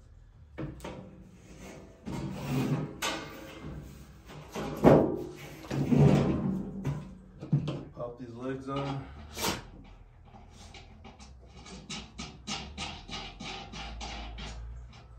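Thin stainless steel cover sheet flexing and knocking against a steel frame as it is handled, with a run of loud bangs and rumbles in the middle seconds.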